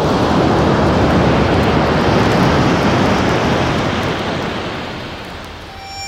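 A rushing noise effect at the opening of a song recording, swelling up out of silence and slowly fading away as the song's first instrumental notes come in at the very end.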